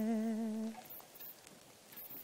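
A woman's unaccompanied voice holds one long, steady low note with a slight waver. The note ends under a second in, closing a sung phrase.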